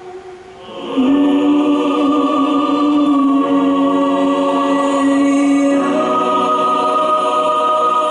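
Live choral music: a choir with a solo voice singing long held chords. After a brief lull the sound swells in about a second in, holds one chord, and moves to a new chord near six seconds.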